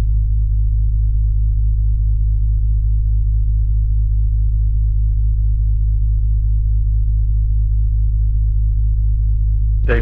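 A loud, steady deep drone: a sustained low tone that holds without change or rhythm, then cuts off suddenly at the end.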